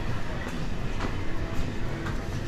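Ambient noise inside a supermarket: a steady low rumble with faint distant voices about a second in and a couple of soft clicks.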